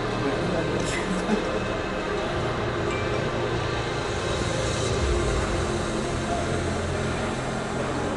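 Large-hall ambience: indistinct background chatter over a steady low hum, with a brief click about a second in.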